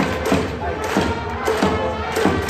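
Baseball cheering-section music: trumpets playing a batter's cheer tune over a drum beaten about three times a second.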